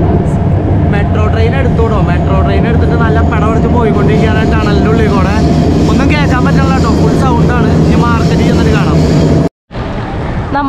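A man talking over the steady low rumble of a moving train carriage, with a steady whine running under it. The sound cuts off abruptly near the end.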